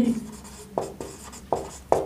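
Marker pen writing on a whiteboard: about four short strokes.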